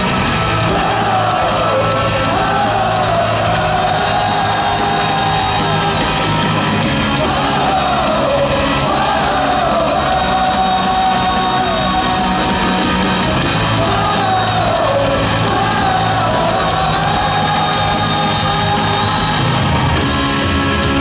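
Live rock band playing a stadium fight song: electric guitars and drums with a sung melody, and shouts and yells riding over the music.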